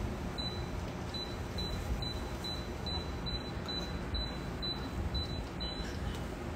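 Low steady room noise, with faint short high-pitched ticks repeating about twice a second.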